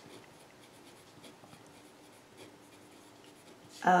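Pen writing on paper: faint, light scratching as words are written out by hand.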